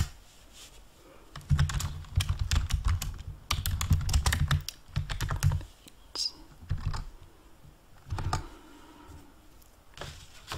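Typing on a yellow large-key computer keyboard: quick runs of key clicks with dull thuds, busiest in the first half, then a few scattered key presses.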